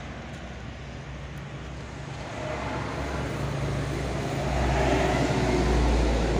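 Rumble of a passing motor vehicle, steady at first and then growing louder over the second half.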